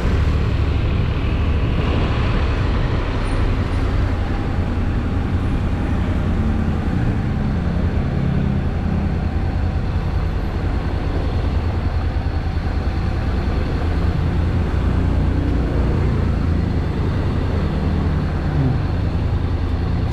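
Steady on-board riding noise from a Honda NC750X at low speed: a deep, constant rumble of wind on the bike-mounted microphone over the parallel-twin engine, with the hiss of tyres on a wet road.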